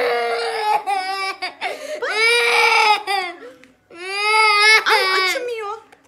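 Toddler crying: a string of long, high wails with short breaks for breath, about four cries in all, the last coming after a brief silence.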